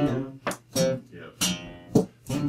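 Acoustic guitar strummed in short chord strokes, about four strums with uneven gaps, each ringing briefly before the next.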